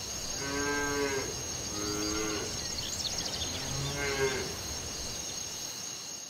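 Cattle mooing: three short calls about a second and a half apart, over a steady high hiss.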